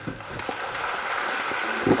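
An audience in a hall applauding, a steady patter of clapping that builds in the first moments and holds until speech resumes.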